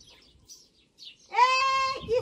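A high voice singing a held, steady note that starts a little past halfway, after a quiet stretch with a few faint bird chirps.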